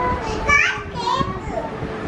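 A young girl's voice in short bursts, rising in pitch.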